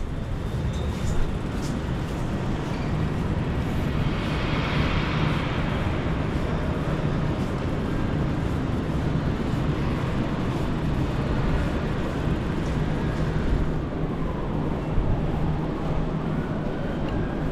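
Bicycle rolling across a station concourse: a steady rumble from the tyres and frame picked up by the bike-mounted camera, over a faint steady hum, with a hissing swell about four seconds in.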